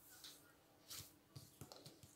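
Near silence, with a few faint soft rustles and taps as hands wrap a strip of puff pastry around a sausage on the table.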